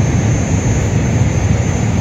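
A train passing close by: a loud, steady, deep rumble that holds without a break.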